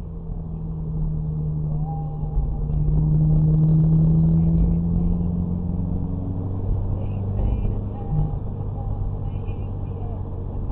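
A car driving, heard from a dashcam inside the cabin: a steady rumble of engine and road noise with a low drone. The drone grows louder about two seconds in, is strongest around three to five seconds and fades by about seven seconds.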